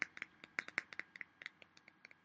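Quick, irregular clicks of typing a text on a smartphone, several taps a second.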